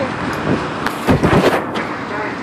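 Rumbling wind and handling noise on a phone microphone riding a moving spider-type fairground ride. It swells to its loudest for about half a second, a second in.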